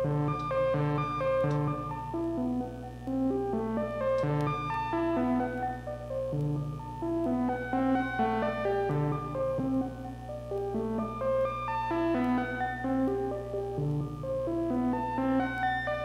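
Eurorack modular synthesizer playing an evolving melody stepped through by the Lattice 12-step CV sequencer: short pitched notes changing a few times a second, over a steady low tone.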